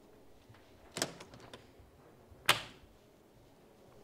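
A quick cluster of small clicks and knocks about a second in, then one sharper, louder knock about two and a half seconds in, over faint room hum.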